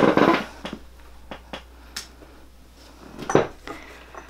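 Rustling movement as a person turns and reaches aside, then a few light clicks, among them a room light switch being flipped off. There is another short rustle a little after three seconds in.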